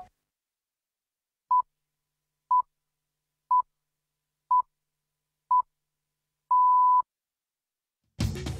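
The BBC Greenwich Time Signal pips: five short pips at the same steady high pitch, one second apart, then a sixth, longer pip. The start of the long final pip marks the exact time at which the news bulletin begins.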